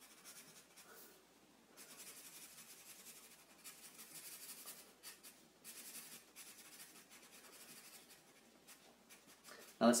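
Black felt-tip marker scratching on paper as a solid area is coloured in, in a run of short strokes with brief pauses between them.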